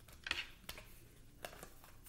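A few faint, short clicks and rustles of a tarot deck being handled in the hands.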